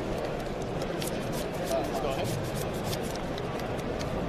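Trading cards being handled at the table: a quick run of light clicks and slides as cards are gathered and fanned in the hand, over a steady background murmur of voices.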